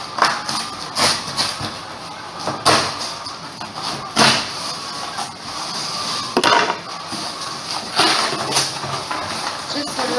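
A cardboard shipping box and its packing being handled by hand: rustling and scraping, with a handful of sharp knocks spread through.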